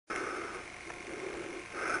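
Faint steady background hiss with no distinct event.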